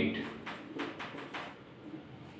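Marker writing on a whiteboard: a few short, faint squeaky strokes in the first second and a half.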